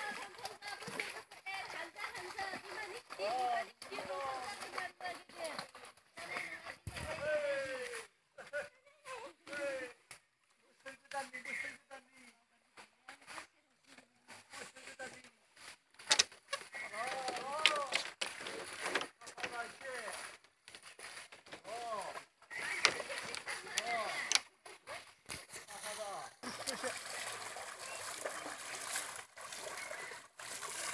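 Voices talking and calling out, mixed with water being splashed and sloshed as cattle are bathed in shallow water; the sharper splashes come in the second half.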